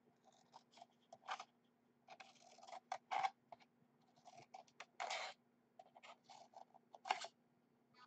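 Scissors snipping a row of short cuts into the end of a rolled construction-paper cylinder. The snips come as a series of short, faint crunches, with the longer ones about every two seconds.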